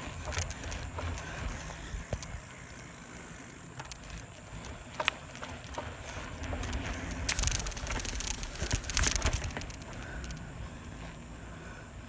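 A 1976 Grip Shift Cobra Pacific bicycle being ridden on asphalt: a steady low rumble of tyres and wind on the microphone, with scattered clicks and rattles. The noise gets louder in bursts from about seven to nine seconds in.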